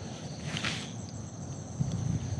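Quiet outdoor ambience: a steady high-pitched insect drone over a soft background hiss, with a brief faint whoosh about half a second in.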